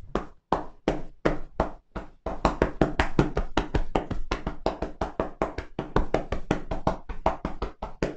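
Hands striking a seated person's shoulders through a towel in percussive shoulder-tapping massage. Spaced strikes at about three a second give way, about two seconds in, to a faster, unbroken patter of taps.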